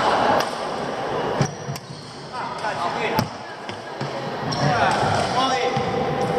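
Badminton rackets hitting a shuttlecock during a rally: a few sharp hits, about a second apart in the first half, echoing in a large hall. Players' voices are heard, louder near the end.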